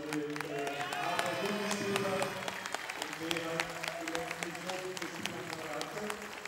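Audience clapping while music with a held melody plays over the hall's sound system.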